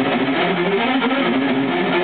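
Solo electric guitar playing a death-metal lead line, a quick run of single notes stepping up and down in pitch.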